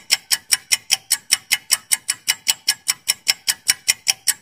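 Countdown-timer sound effect: rapid, even clock-like ticks, about six a second, marking the time left to answer a quiz question.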